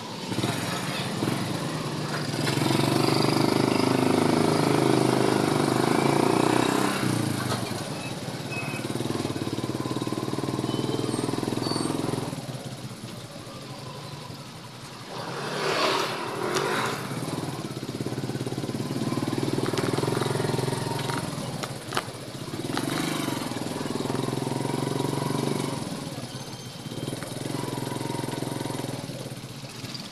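Motorcycle engine running while riding, pulling steadily in stretches of a few seconds with the throttle eased off between them. A brief louder rush of noise comes about halfway through.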